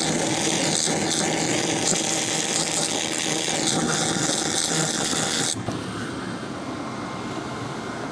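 2000 W handheld fiber laser cleaner stripping thick powder coating off a metal part: a loud, steady hiss that cuts off abruptly about five and a half seconds in, leaving a quieter steady machine hum.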